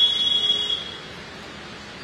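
A loud, high-pitched steady tone lasting about a second, stopping before the halfway point, over a faint low background noise.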